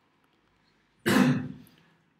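A person's single throat-clearing cough about a second in, sudden and loud, fading over about half a second.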